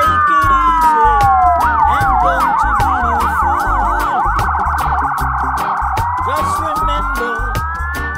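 Dub siren effect over a reggae rhythm: long falling pitch sweeps, then a rapid warbling wail from about two to six seconds in, then rising sweeps near the end. Under it run a repeating heavy bass line and regular hi-hat ticks.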